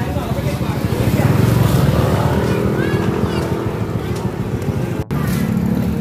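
A motor vehicle engine passing close by on the street, growing louder about a second in and staying loud through the middle.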